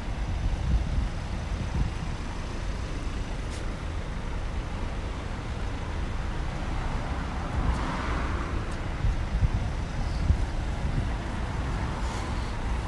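City road traffic: a steady low rumble from a queue of cars idling and creeping forward, with a short swell of noise about eight seconds in.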